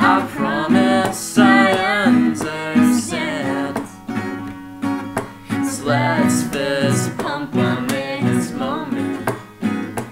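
Two acoustic guitars strummed together while a young woman and a young man sing a duet.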